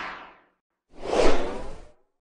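Whoosh sound effects of a logo animation: one whoosh fading out in the first half-second, then a second, louder whoosh about a second in that swells and dies away.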